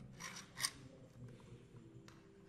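Hard plastic of a toy rooster handled in the hand: a brief scrape, then one sharp click about half a second in.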